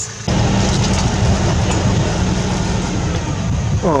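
Vehicle engine running as the vehicle moves off, a loud steady rumble that comes in suddenly a fraction of a second in.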